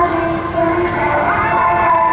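Music for a skating routine played over outdoor loudspeakers: held, chord-like notes that shift every half second or so, with a rising slide about a second in.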